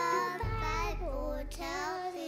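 Young children singing along with backing music into stage microphones; the backing music's low end stops near the end.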